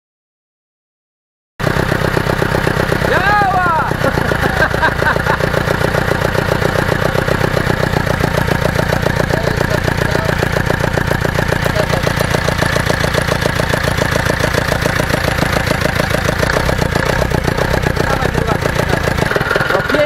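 Ursus C-360 tractor's four-cylinder diesel engine running at a steady idle with its valve cover off, coming in suddenly about a second and a half in. It runs evenly, in the owner's word running beautifully, revived after standing unused for an unknown time.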